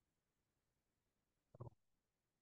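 Near silence, with one brief, faint, low murmur from a person about one and a half seconds in.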